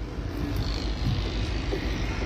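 Steady low rumble with a hiss over it, with no distinct events.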